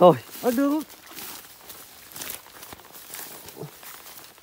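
Rustling and light scuffing as a fine monofilament gill net is hauled in through wet grass and bank plants, with small irregular clicks and crackles.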